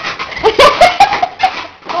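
A bed squeaking and creaking under a person's weight as she climbs across and off it: a cluster of short, high squeaks and clicks about half a second to a second and a half in.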